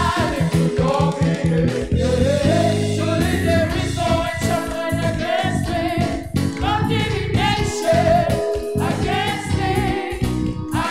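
Live gospel worship music: a group of singers on microphones singing together in harmony over electric keyboard accompaniment.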